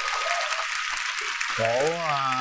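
Audience applause, a dense patter of many clapping hands, with a man's voice starting to speak over it about one and a half seconds in.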